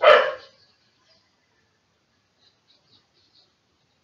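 A dog barking once, loud and short, right at the start. A few faint clicks follow a couple of seconds later.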